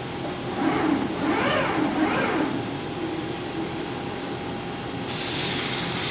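Eagle CP60H section bending machine running as a steel angle feeds through its three forming rolls, a steady mechanical drone with faint steady whines. There are a few short rising-and-falling tones about a second in, and a hiss comes in near the end.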